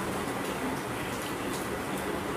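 Steady room noise with a low hum, and a few faint light clinks of plates and serving spoons as dishes are handled and passed.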